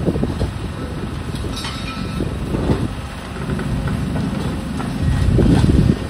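Tracked demolition excavator running while its attachment breaks up a concrete floor slab, with rumbling and crunching of concrete and rubble falling, loudest near the end.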